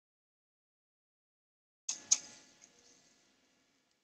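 Two sharp clicks about a quarter second apart, the second louder, followed by a brief fading rattle.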